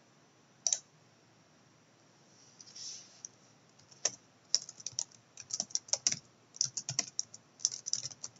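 A single click about a second in, then computer keyboard typing that starts about halfway through: irregular key clicks that come faster toward the end.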